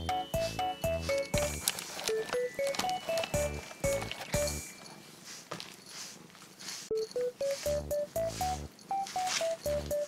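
Background music: a bouncy melody of short notes over a pulsing bass line. The bass drops out for a few seconds in the middle.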